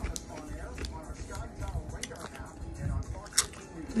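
A person chewing food close to the microphone, with a run of small crisp crunches and one sharper crunch near the end. Faint music or voices sit underneath.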